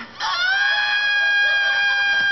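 A man's long, high-pitched scream, starting a moment in and held on one steady note, heard through a television's speaker.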